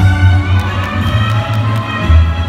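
Viennese waltz music with strings and a strong regular bass beat, played loud in a large hall, with brief crowd cheering and a few sharp claps in the middle.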